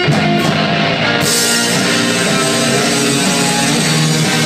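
Live rock band playing loudly, led by electric guitars, with a dense wall of sustained notes.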